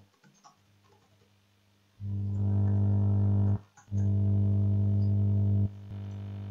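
A steady low electrical-sounding buzz with even overtones, starting about two seconds in, breaking off briefly in the middle, and dropping to a lower level near the end; faint keyboard clicks are heard before it starts.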